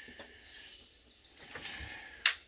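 Quiet outdoor ambience: a faint steady background hiss with a couple of soft clicks.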